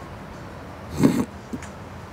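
A man's short, breathy snort of laughter about a second in, otherwise quiet room tone.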